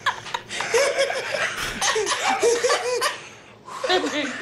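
Hearty laughter in repeated short bursts, stopping briefly near the end.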